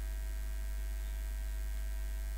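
Steady low electrical mains hum with a faint hiss, picked up by the recording.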